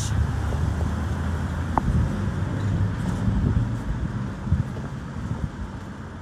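Street traffic: a motor vehicle's engine running close by, a steady low rumble that eases off near the end.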